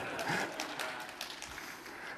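Light, scattered clapping from a few audience members: soft, uneven claps over the room's background noise.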